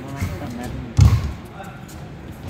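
Badminton rally on an indoor court: one heavy thump about a second in, from a player's lunge or a racket strike, among lighter knocks.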